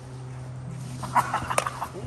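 A dog whimpering briefly about a second in, over a steady low hum.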